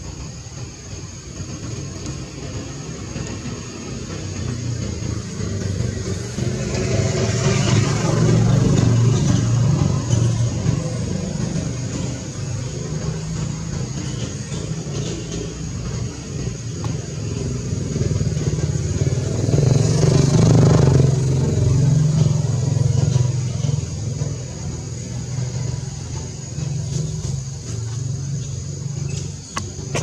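Motor traffic: a steady engine drone that swells twice as vehicles pass, about a quarter of the way in and again about two-thirds of the way through.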